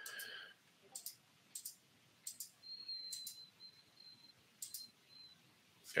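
Computer mouse clicking: about half a dozen separate, faint clicks spread over a few seconds, with a faint thin high tone in between.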